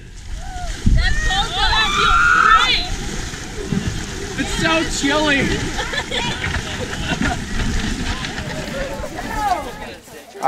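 Water splashing and sloshing as people wade through a shallow river pulling a wooden handcart, with excited shouts and calls from the group over it, loudest in the first few seconds.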